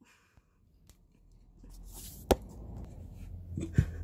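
Near silence for about a second and a half, then quiet workshop room tone with a single sharp tap a little after two seconds and a smaller knock near the end, as small tools and parts are handled on the jewellery bench.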